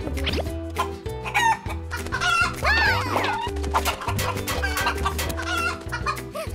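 Cartoon chicken squawking and clucking after being disturbed on its nest, with the loudest run of calls about two to three seconds in, over background music with a steady beat.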